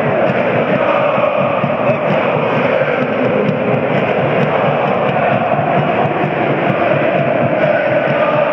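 Football stadium crowd, a loud, steady mass of fans' chanting and shouting with no let-up.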